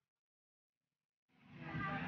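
Dead silence for over a second, then a dense mix of background sound with a steady low hum fades in over the last half second.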